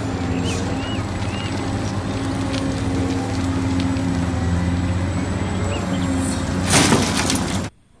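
Large tracked hydraulic excavator's diesel engine running steadily under load while it digs, its pitch shifting as the load changes. About seven seconds in comes a loud rushing crash of earth and rock, then the sound cuts off abruptly.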